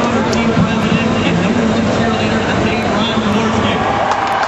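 A man's voice amplified over a public-address system, with the steady noise of a large crowd underneath.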